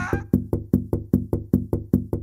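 Quick cartoon footstep sound effect, short knocks at about five a second, growing steadily fainter as the walker moves away.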